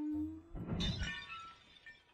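A sudden crash of something breaking about half a second in, followed by tinkling that rings on and fades over about a second.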